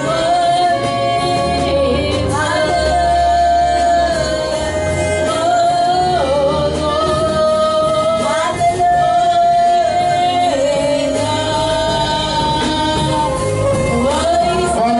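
Live worship music: a singer holds long, sustained notes that slide from one pitch to the next over a band with a steady bass.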